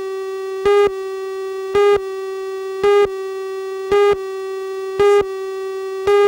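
Tape countdown leader tone: a steady buzzy electronic tone with a louder pip about once a second, five pips in all, marking each second of the count.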